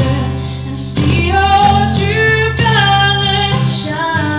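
A woman singing live into a microphone over strummed acoustic guitar, holding long sung notes from about a second in.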